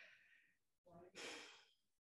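Near silence, with one faint breath out lasting about half a second, starting about a second in.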